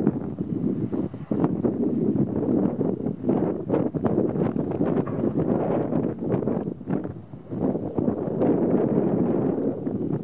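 Wind buffeting the microphone: a rough rumbling noise that rises and falls, dipping briefly about seven seconds in, with scattered sharp clicks and cracks.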